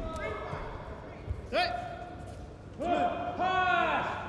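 A voice shouting three short, high-pitched calls, the first about a second and a half in and two more in quick succession near the end.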